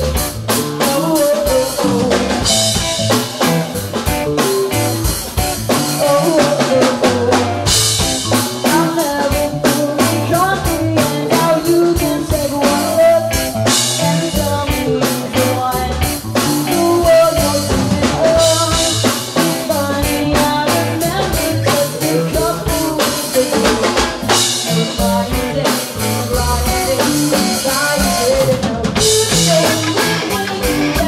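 Rock band playing live: drum kit, electric guitars and bass guitar, with cymbal-heavy stretches recurring every few seconds.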